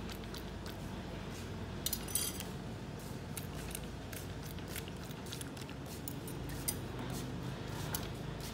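Faint light metal clicks and clinks as the parts of an excavator swing motor are handled and oiled, with a few sharp ticks about two seconds in, over steady low background noise.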